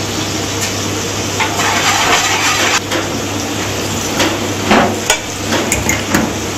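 Metal spoons and tongs knocking and scraping against steel frying pans as curries cook on a commercial gas range, with frying sizzle through a stretch near the start. Several sharp clatters come in the last couple of seconds, over a steady low hum.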